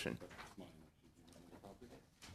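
A man's speech ends right at the start, followed by faint off-microphone voices murmuring in a room.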